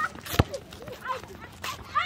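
A volleyball struck once with a sharp smack, about half a second in, then a fainter knock near the end, over scattered distant shouts of players.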